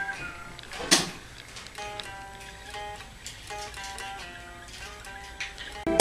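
A quiet guitar melody of single picked notes, one after another. A sharp click comes about a second in.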